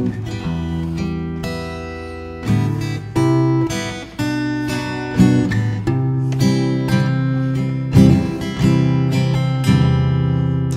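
Acoustic guitar strumming sustained chords about once a second, an instrumental passage with no singing.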